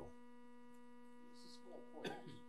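Near silence with a steady electrical hum in the recording system, and a faint murmur of a voice near the end.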